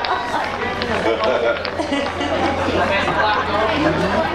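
Indistinct chatter of several voices after the song has ended, over a steady low hum, with a few sharp clicks.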